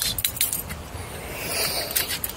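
A bunch of keys on a lanyard jangling in the hand: a few light clinks about the first half second, then a short rustle of handling near the end.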